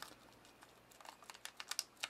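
Faint small clicks and ticks of hands handling a small brushless motor and a plastic parts bag, coming quicker in the second second.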